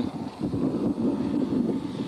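BriSCA Formula 1 stock cars' V8 engines running as the cars race round the oval, a steady drone with wind on the microphone.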